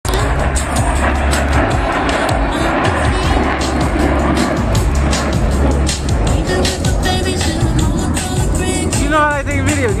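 Jet roar from two low-flying Blue Angels F/A-18 Super Hornets, heaviest in the first several seconds and easing off after about six seconds. Music over the loudspeakers comes through near the end.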